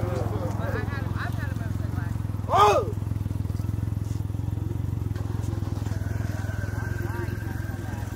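Motorcycle engine idling steadily, with voices over it and one loud shout about two and a half seconds in.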